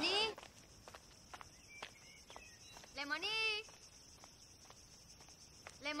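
A high voice calling the name "Lemoni" three times, each call drawn out and rising, about three seconds apart. Faint footsteps on a dirt path sound between the calls.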